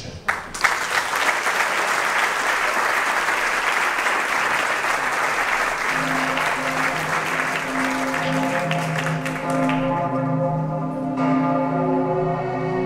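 Audience applause right after the closing words of a speech, dying away about ten seconds in. About halfway through, classical string music starts under it and carries on alone.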